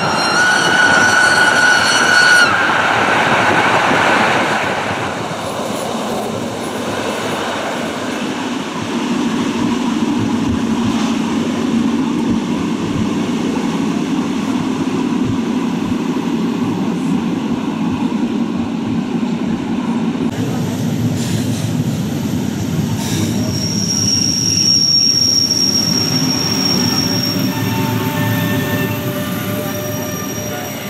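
Rhaetian Railway narrow-gauge electric passenger train running steadily on the rails. Its wheels squeal high on a curve for the first couple of seconds, and a thinner, higher squeal comes in about three-quarters of the way through.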